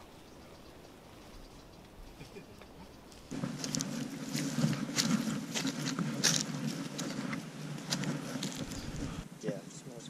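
Faint outdoor quiet for about three seconds, then footsteps on a dirt forest trail with short sharp crunches and a steady low rumble from a handheld camera being carried.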